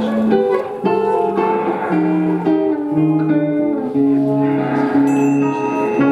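Live free-improvised ensemble music led by guitar: a line of held notes that steps up and down in pitch, layered over other sustained tones.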